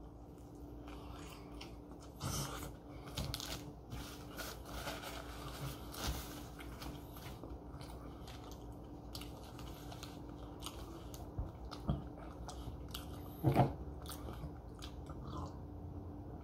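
Close-up chewing of a bite of grilled tortilla wrap: soft, irregular mouth clicks and smacks. There are a couple of louder short sounds a couple of seconds before the end.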